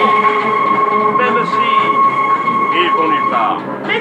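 Metro train running, with a steady high whine that stops about three-quarters of the way through.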